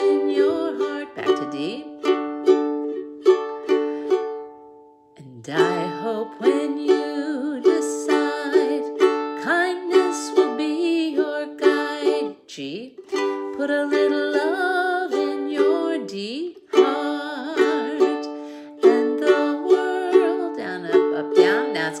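KLOS carbon-fibre ukulele strummed in a down, down, up, up, down, up pattern, playing chords in the key of D, with a brief break about five seconds in. A woman's voice sings along over the strumming in places.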